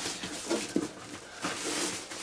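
Rustling of a thin protective wrapping sheet as it is pulled off an arranger keyboard, with a few soft handling sounds.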